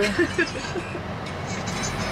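Steady road and engine noise heard inside the cabin of a moving Mitsubishi Xpander: an even hum and tyre rumble while driving.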